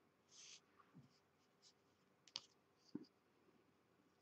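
Near silence, with two faint clicks about half a second apart a little past the middle: wooden weaving sticks knocking together as they are handled.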